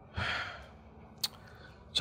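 A person's sigh: one breathy exhale starting about a quarter second in and fading within half a second, followed by a faint click.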